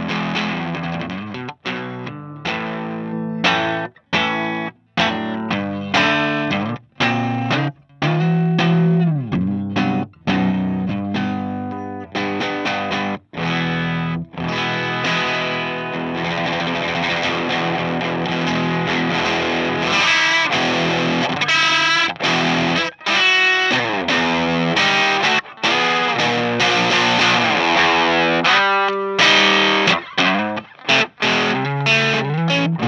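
Electric guitar played through a WMD Goldilocks Planet distortion pedal, with distorted strummed chords. For the first half the chords are choppy with short breaks; after that they ring on more continuously while the pedal's knobs are turned.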